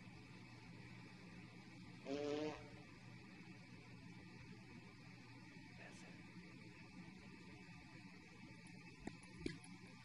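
Near silence: faint room tone, broken once about two seconds in by a short buzzy pitched sound lasting about half a second.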